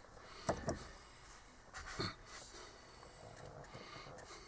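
A quiet van cab with the ignition switched on and the engine not yet running: a few faint, short clicks, about half a second in, again just after, and about two seconds in.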